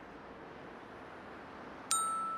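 A quiet stretch, then near the end a single bright ding that rings on with several high clear tones: a cartoon chime sound effect marking the traffic light turning green.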